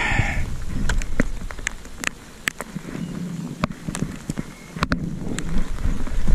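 Raindrops ticking irregularly on a close surface over a light patter of rain, with a faint low steady hum in the middle.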